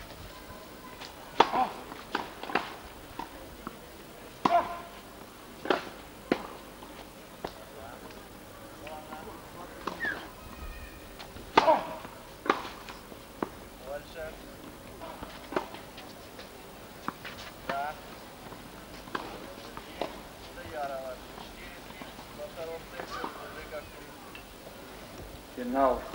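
Tennis balls struck by rackets and bouncing on the court: short, sharp pops at irregular intervals, a second or so apart at first and sparser later. Faint voices chatter between them.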